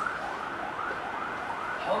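A siren sounding in quick, repeated rising sweeps, about three a second.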